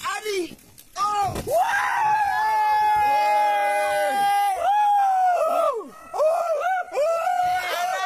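A person's voice in a long, held high call lasting about two and a half seconds, followed by a string of shorter rising-and-falling calls.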